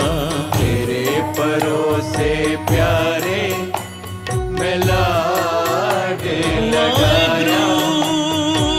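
Devotional Gurbani shabad music: a melody with vibrato over a steady drone and a regular low drum beat.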